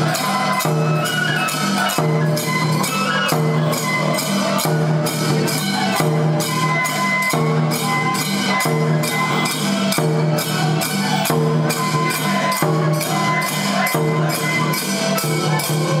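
Toramai festival music: a taiko drum and jangling hand cymbals keep up a fast, steady beat, about three or four strokes a second, under a held, high melody from a bamboo flute.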